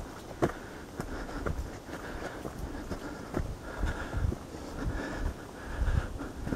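Footsteps on a dirt forest trail, irregular knocks at a walking pace, with low wind rumble on the microphone.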